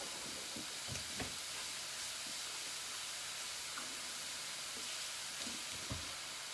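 Chicken sizzling steadily in a hot, oil-free pan under a grill press, with a few faint knocks in the background.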